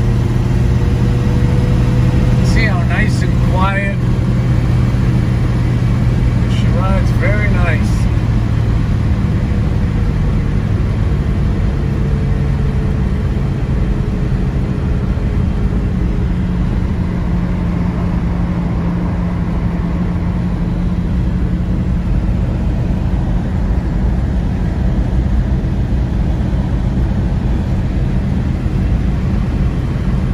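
A 1964 Plymouth Valiant's engine and road noise, heard from inside the cabin as the car picks up speed and then cruises at a steady pace.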